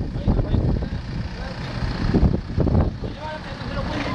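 Jeep Wrangler Rubicon's engine running at low revs as it creeps backward through mud, a low, steady rumble.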